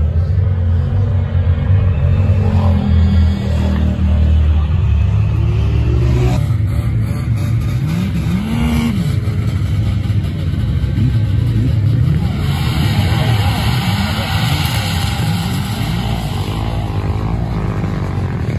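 Off-road side-by-side engines running and revving up and down as the machines race across the ice. A rushing hiss joins about two-thirds of the way through.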